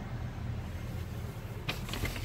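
Steady low hum inside a car's cabin, with a brief rustle of the handheld camera being moved near the end.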